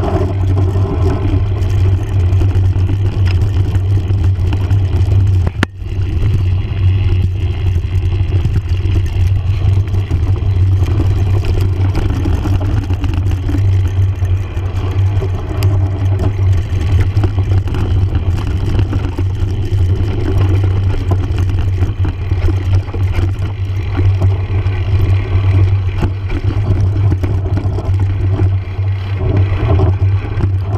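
Mountain bike running fast downhill over a dirt and gravel trail, heard from a low-mounted action camera: a steady, loud rumble of knobby tyre on gravel and wind on the microphone, with the bike rattling over the bumps. The rumble drops out briefly about six seconds in.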